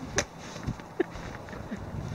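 Footsteps crunching in deep snow: a few scattered, uneven steps with short soft thuds.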